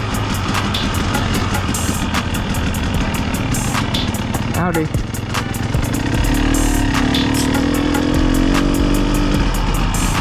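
Two-stroke KTM 300 XC dirt bike engine running at low trail speed under a constant rush of wind noise on the helmet camera, settling to a steady, even note from about six seconds in as the bike slows.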